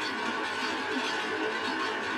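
Quiet, steady background music.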